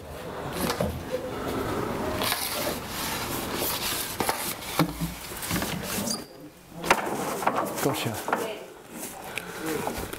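Rustling, rubbing and knocks on wood as a long-handled landing net is worked up against a wooden wall ledge to catch a sparrowhawk, with a sharp knock about seven seconds in.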